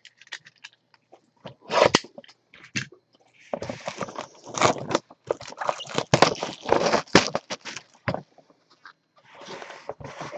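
A sealed retail box being opened by hand: its plastic wrapping crinkles and the cardboard scrapes and rustles. There are a few short rustles early on, then a dense run of crinkling and scraping from about three and a half to eight seconds in.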